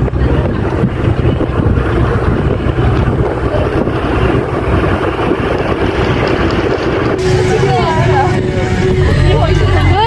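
Moving bus: a steady rush of road and wind noise with a low rumble. Voices come in about seven seconds in.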